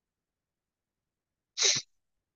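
Near silence, then a single short sneeze from a person near the end.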